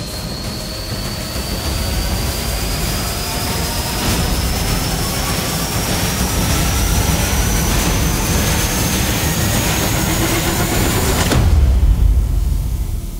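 Trailer sound-design riser: a dense noisy build over a low rumble, with a thin whine rising steadily in pitch, which cuts off suddenly near the end into a deep low hit.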